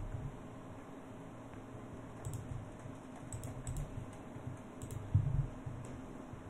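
A few scattered clicks of a computer keyboard and mouse, with a soft low thump about five seconds in.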